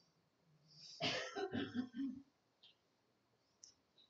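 A man clearing his throat once, about a second in: a rough rasp followed by a few short low sounds, lasting just over a second.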